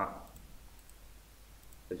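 A few faint clicks of a computer mouse as AutoCAD drawing work goes on.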